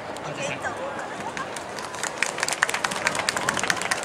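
Audience applause that starts about two seconds in and thickens into a run of irregular claps, over voices in the crowd.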